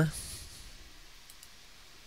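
Two faint computer mouse clicks about a second and a half in, dropping a dragged grip in place.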